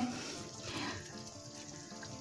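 Fish curry gravy simmering in a kadhai: faint, soft bubbling.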